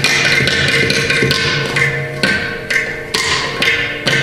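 Mridangam and ghatam playing fast, dense interlocking strokes over a steady drone, as in a Carnatic percussion solo (tani avartanam). The strokes soften briefly a little past the middle, then come back strongly.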